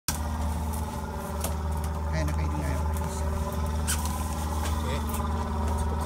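Fishing boat's engine running steadily at idle, a low even hum throughout, with a few short sharp knocks and brief voices over it.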